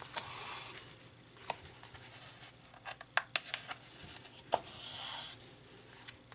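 Hand stitching through scrapbook cardstock: thread drawn through the pierced paper in two soft rasping pulls, one at the start and one about five seconds in, with a few light clicks and taps of the needle and paper between them.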